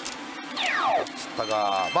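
Pachinko machine's electronic sound effects, with a falling sweep tone about half a second in.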